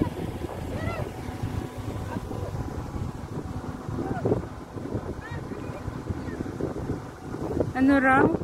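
Steady low rumble of a car driving, with wind rushing on the microphone and faint voices in the background. A louder voice cuts in right at the end.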